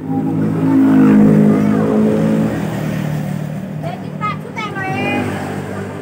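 A motor vehicle's engine passing close by, loudest about a second or two in and fading over the next few seconds.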